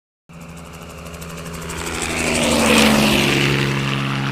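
Propeller aircraft fly-by sound effect: an engine drone that starts about a quarter second in, grows louder to a peak near three seconds with a slight drop in pitch as it passes, then holds steady.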